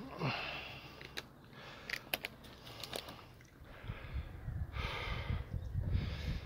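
A hiker breathing hard while walking, with two long, hissy breaths, a few light clicks and wind rumbling on the microphone in the second half.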